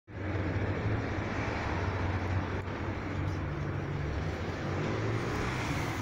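Honda GX25 small four-stroke OHV engine on a Husqvarna T300RH Compact Pro cultivator, running steadily.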